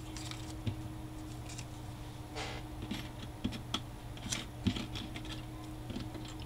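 Thin steel cutting dies and die-cut paper shapes being handled and set down on a cutting mat, giving scattered light clicks and taps, with a brief papery rustle about two and a half seconds in.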